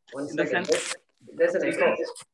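Speech: a man's voice in two short phrases.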